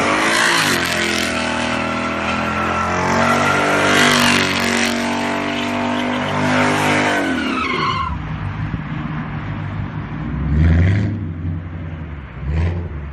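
Ford Mustang doing donuts: the engine is held at high revs while the rear tyres spin and squeal. After about eight seconds the revs and tyre noise fall away to a lower engine rumble, with a brief rise in revs near the end.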